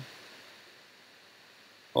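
Near silence: faint steady room hiss in a pause between spoken words.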